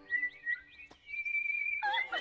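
Small birds chirping in short whistled calls, then a longer warbling whistle about a second in, over faint sustained music.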